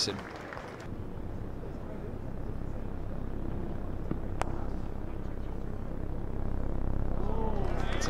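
Single sharp crack of a cricket bat striking the ball a little past halfway, over a steady low background rumble that slowly grows louder.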